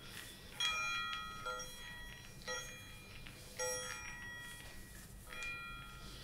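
Chimes ringing, a new bell-like chord struck about once a second, its tones ringing on and overlapping.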